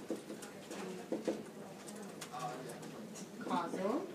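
Low, soft voices in a small room, with a few light clicks about a second in and a short sound that rises and falls in pitch near the end.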